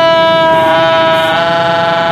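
Plastic toy trumpet with a flower-shaped bell, blown in one long held note that steps slightly down in pitch a little past halfway.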